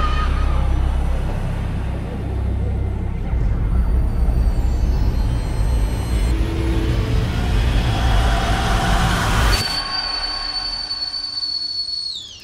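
Horror trailer sound design: a loud, heavy low rumble builds with swelling noise, then cuts off abruptly about ten seconds in, leaving a thin, steady high-pitched ringing tone.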